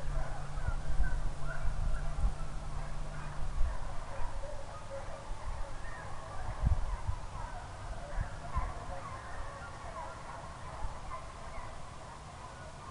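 A pack of hounds baying in the distance: many short, overlapping cries scattered through the whole stretch, slowly getting fainter. A low steady hum sits under the first few seconds and stops, and there are a few low thumps.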